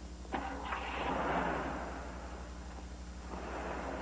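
A sharp knock, then a car driving off with a rush of engine and tyre noise that swells and fades, and a second, weaker rush near the end.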